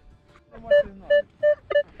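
Metal detector giving a target signal: a run of short, identical mid-pitched beeps, about three a second, starting a little under a second in, as the coil passes back and forth over a buried target.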